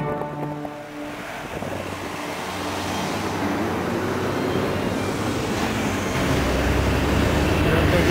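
Wind rushing over the microphone with road and engine noise from a moving motorcycle, growing louder, with a deeper rumble from about six seconds in. Background music fades out in the first second.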